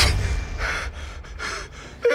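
A man gasping and breathing hard, a few short ragged breaths, just after a loud music hit cuts off.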